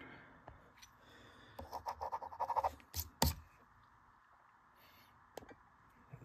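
Quiet handling noises: about a second of rapid scratching or rubbing, then two sharp clicks close together, and a faint click later.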